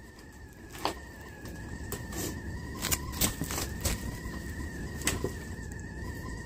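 Wood fire in the stove whistling: a faint, steady high whistle, with a few sharp ticks and crackles scattered through it.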